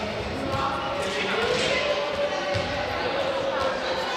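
Many students' voices chattering in a reverberant sports hall, with a ball bouncing on the hard floor several times.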